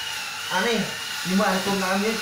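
A man speaking Khmer in short phrases, explaining a maths problem, over a steady high-pitched whine.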